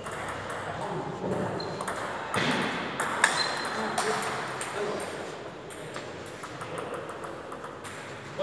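Table tennis rally: a run of sharp, irregular clicks as the ball is struck by the paddles and bounces on the table.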